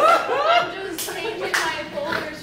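Laughter from an audience trailing off, then two sharp hand claps about a second and a second and a half in.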